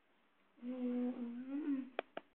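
A person humming one long note, beginning about half a second in, with a slight dip and then a rise in pitch before it stops. A sharp click comes at the very end.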